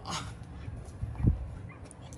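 A dog barks once, short and sharp, about a second in.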